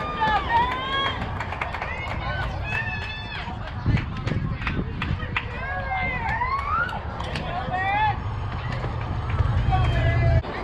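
Young players' voices shouting and cheering in short, high-pitched calls over a steady low rumble.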